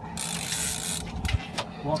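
Fishing reel working against a kingfish on the line: a hiss for most of the first second, then a few sharp clicks from the reel.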